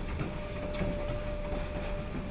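Treadmill running with a child walking on its belt: a low steady rumble from the belt and motor, joined shortly after the start by a steady motor whine as the machine is set a little faster.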